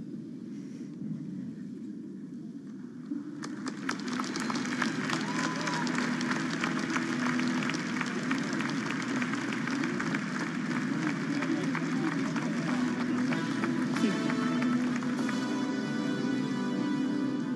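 Applause from many people clapping, swelling about three and a half seconds in and keeping up, over steady background music.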